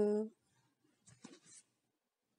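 A voice intoning a Telugu recitation ends on a held syllable just after the start. Then comes near silence, with a faint brief sound at about a second and a half.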